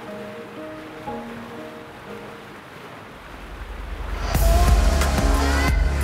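Soft piano music over water pouring from a waterfall into a plunge pool. About four seconds in, the water sound grows much louder with a deep rumble as it splashes close by.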